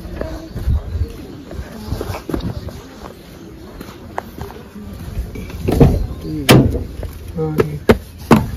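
A van's door being opened, with a few sharp clunks in the last couple of seconds, over faint background voices.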